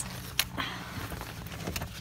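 Tack items being handled: rustling of fabric and packaging as a tack organizer is pulled out, with one sharp click about half a second in, over a steady low hum.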